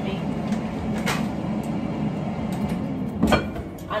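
Kitchen handling sounds over a steady low hum: a light knock about a second in and a louder, sharp clack a little past three seconds in, like a cupboard or counter knock.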